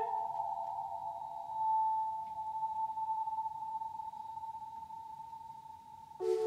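Sustained electronic drone from the live electronics: a steady mid-pitched synthesizer chord held on its own, swelling briefly about two seconds in and slowly fading. The last of a sung note falls away right at the start.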